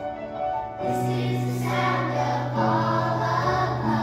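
Children's choir singing with piano accompaniment; the voices come in about a second in over the piano and carry on together.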